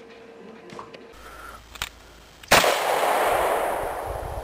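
A single 9 mm pistol shot, from a Taurus PT-908, about two and a half seconds in, its sound dying away over roughly two seconds.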